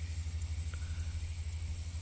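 A steady low rumble with a faint, steady high hiss above it.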